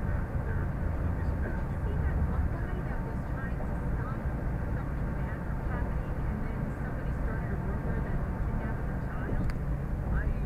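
Steady road and engine noise heard from inside a car cruising at highway speed: an even low rumble of tyres and drivetrain, with one brief tick near the end.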